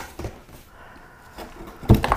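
Cardboard box flaps being opened by hand: a few short scrapes and knocks, the loudest just before the end, with quieter rustling in between.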